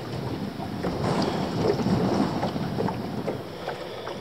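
Strong wind buffeting the microphone: a rushing, rumbling noise that swells a little in the middle and then eases.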